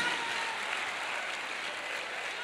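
Congregation applauding steadily.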